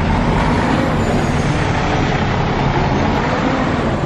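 A heavy vehicle's diesel engine running steadily: a low drone under a steady rush of noise.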